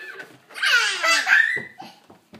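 A toddler laughing loudly in a high-pitched, squealing burst that starts about half a second in and lasts just over a second.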